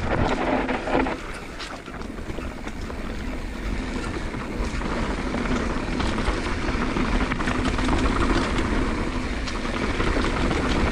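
Mountain bike rolling fast down a dirt singletrack, heard from a camera on the rider: wind buffets the microphone over a steady rumble of tyres on dirt. Frequent short clatters come from the bike rattling over bumps.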